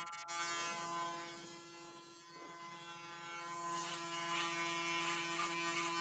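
Electric hair clippers running with a steady hum while cutting a fade at the side of a man's head. The cutting hiss gets louder in the second half.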